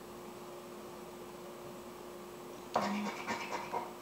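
A scratch-off lottery ticket's coating being scraped with a handheld scraper, a short spell of scratching near the end, over a low steady hum.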